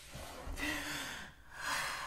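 A man laughing breathlessly: two long, wheezy gasps of laughter, the first with a faint squeak of voice in it.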